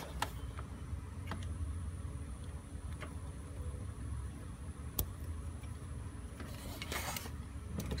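A few light clicks and a brief rustle of hands working the plastic bleeder clip and hose on a clutch slave cylinder, over a steady low hum. The sharpest click comes about five seconds in, and the rustle comes near the end.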